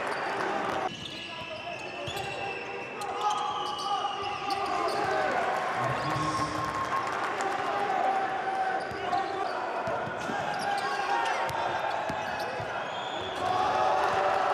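Basketball game sound on a hardwood court: the ball bouncing over a hum of voices from players and the crowd, with a sudden drop in level about a second in.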